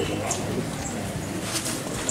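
A dove cooing in the forest.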